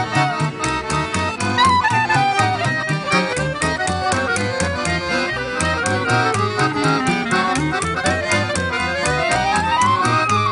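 Small folk band playing a Romanian traditional tune: a clarinet lead over accordion, strummed acoustic guitar and a plucked double bass keeping a steady pulse. The lead line runs down through a long descending run in the middle and then climbs quickly back up near the end.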